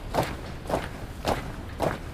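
Honour guard marching in step, boots striking the stone pavement in unison: four heavy footfalls, a little over half a second apart, in an even marching rhythm.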